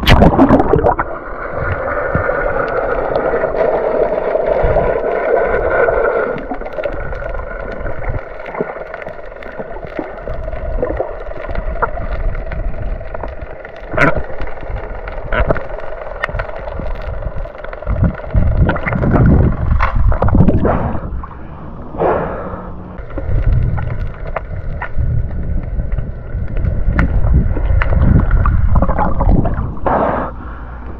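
Muffled underwater noise of a snorkeler searching the seabed: water moving and gurgling around the submerged camera, with scattered sharp knocks and stretches of heavier low rumbling in the second half. A faint steady hum runs underneath.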